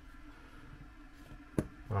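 A single sharp click about one and a half seconds in, as the carburetor's diaphragm top cover is pressed down and seats on its tight guide pins, over faint room tone.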